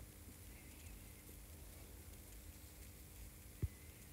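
Near silence: quiet room tone with a faint steady hum, broken once near the end by a single brief soft thump.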